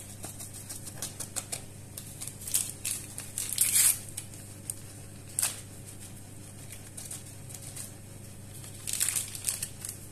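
Small paper sachets of baking powder being handled, torn open and emptied into a plastic bowl: paper crinkling and tearing with light clicks and taps, in a few short bursts.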